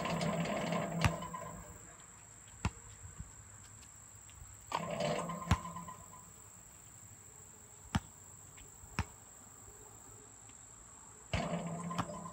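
Basketball play on an outdoor court: three times the ball strikes the metal rim and backboard, each a sharp hit followed by a ringing clang of about a second. Single knocks of the ball bouncing on the asphalt come every second or two in between. A thin, high, steady insect buzz runs underneath.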